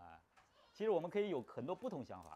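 Speech: a person's voice talking in the second half, after a short pause.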